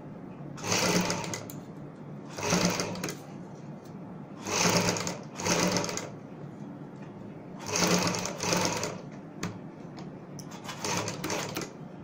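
Sewing machine stitching pearl lace onto a fabric piece, run in short bursts of about a second each with brief pauses between, seven in all.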